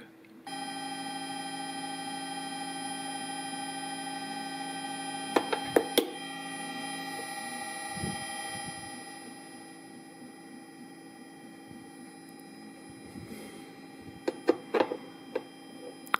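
A steady electronic drone of many held tones together, from a frequency soundtrack on a music player, starts about half a second in and drops in level around nine seconds. A few sharp clicks come around five to six seconds and again near the end.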